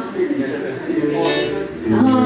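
Electric guitar playing a few held notes, briefly, between spoken remarks.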